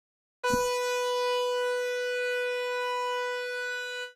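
A single electronic keyboard note, B4, held at a perfectly steady pitch for about three and a half seconds, starting half a second in with a faint key thump and cutting off at the end. It is played as a reference pitch to compare against the singer's note.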